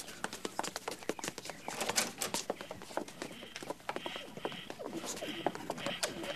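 Radio-drama sound effect of a busy machine-run hatchery: a dense, irregular clatter of clicks and ticks. About three seconds in, short high-pitched tones join it and come and go.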